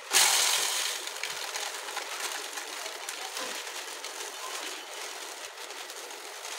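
Dry grains poured from a plastic packet into a plastic jar: a steady rustling patter of grains hitting the jar and each other, starting suddenly and loudest in the first second.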